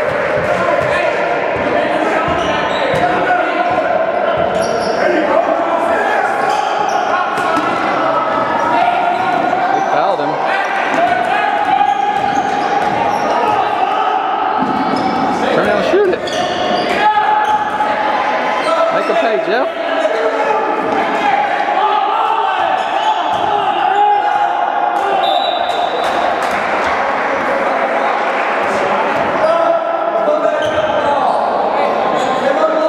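Basketball game sounds in a gym: a ball bouncing on the hardwood floor during play, under continuous unclear voices from players and spectators.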